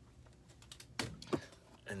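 A few light clicks and knocks of a framed picture being handled, with a short vocal sound about a second in.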